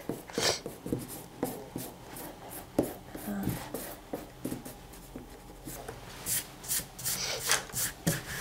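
Eraser rubbing over watercolour paper in short, irregular strokes, erasing excess pencil lines from the sketch. The strokes are louder and quicker near the end.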